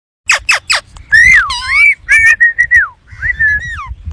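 Indian ringneck parakeet giving three quick sharp chirps, then a run of clear whistled calls that slide down and back up in pitch, with a few held level notes in between.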